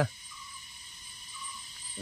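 Faint, steady chirring of insects in the background.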